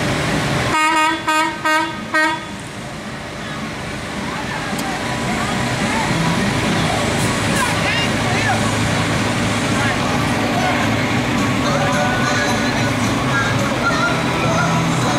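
Four short, quick toots of a truck horn, followed by the flatbed truck's engine running steadily as it rolls slowly past.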